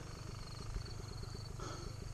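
Enduro dirt bike's engine idling, a quiet, steady low pulsing, with a faint high insect chirp over it.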